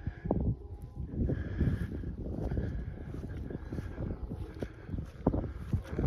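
Distant jet airliner climbing away after takeoff, a faint low rumble, mixed with wind buffeting the microphone.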